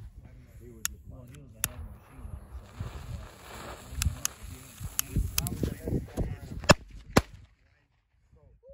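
A firecracker fuse lit with a lighter, hissing and sparking for several seconds, with a run of sharp cracks and pops, the loudest near the end.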